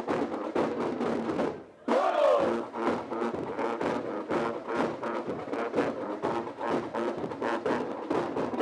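School marching band playing, its drums keeping a quick, even beat under the melody. The music drops out briefly just before two seconds in, then comes back at its loudest.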